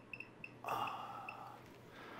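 Faint, quick, high-pitched electronic chirps repeating irregularly for about the first second and a half. A soft breathy exhale comes in about two thirds of a second in and fades out.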